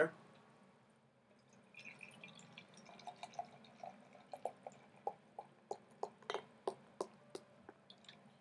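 Beer being poured from a glass bottle into a tulip glass: a faint pour starting about two seconds in, then a run of short glugs, about three a second, as air gulps back into the bottle.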